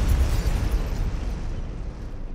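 Cinematic explosion sound effect: a deep boom with a low rumble that fades away steadily.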